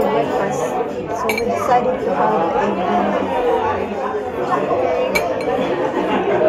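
Murmur of voices in a breakfast room, with sharp clinks of china cups and saucers about a second in and again near the end.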